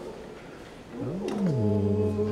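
A person's drawn-out wordless "ooh" of delight, starting about a second in. It rises and falls in pitch, then holds on one long steady note.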